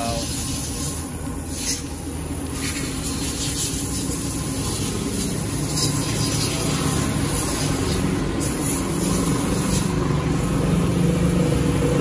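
Short hisses of aerosol cleaner sprayed through a straw nozzle onto a motorcycle throttle body, about a second in and again near the middle, over a steady engine-like hum.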